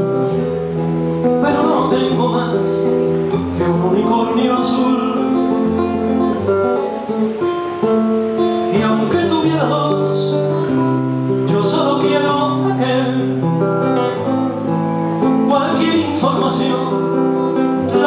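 Acoustic guitar strumming a slow song accompaniment, with a man's singing voice coming in at times.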